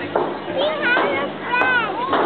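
Several children's voices talking and calling over one another, high-pitched.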